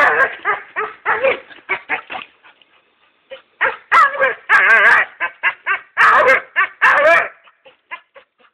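A dog yipping and whining in a rapid series of short, wavering calls, with a pause about three seconds in: the excited noises of a dog trying to reach a vine hanging out of reach above it.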